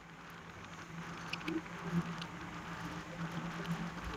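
Faint, steady road and engine noise inside a moving car's cabin, with a low, even hum and a few light ticks.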